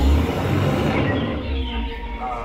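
Jungle Cruise tour boat running as it pulls in to the loading dock: a low motor rumble with churning water, loudest in the first second. Background music plays faintly with it.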